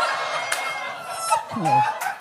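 Audience laughter right after a punchline, fading over the first second or so. Near the end a voice gives a short cry that falls in pitch.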